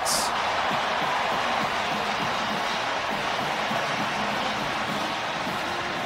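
Large stadium crowd cheering a touchdown, a steady wash of noise that eases slightly toward the end.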